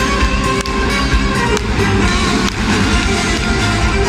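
A live band playing amplified music through a PA in a large concert hall.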